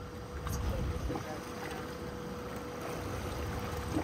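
Steady low rumble of wind and boat noise at sea, with a faint steady hum and a couple of faint clicks.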